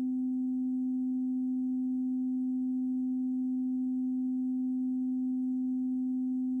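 A steady, pure electronic sine tone held at one low-middle pitch and level, with a much fainter higher tone above it: the sustained 'frequency' drone of a meditation sleep track.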